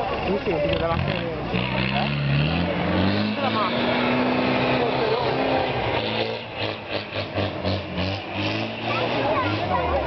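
A Land Rover Defender's engine revving hard as it climbs a steep dirt slope. The pitch rises between about two and four seconds in, then rises and falls with the throttle, with a quick run of clicks about six to eight seconds in.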